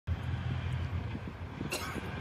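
A low, steady rumble of outdoor background noise. A man's voice starts near the end.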